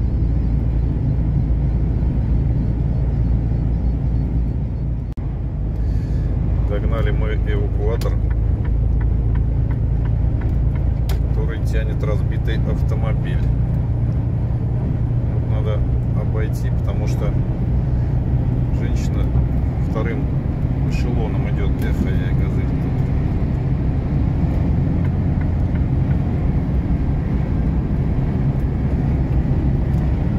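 Steady low drone of a heavy truck's engine and tyres heard from inside the cab at highway speed, with faint intermittent voices over it.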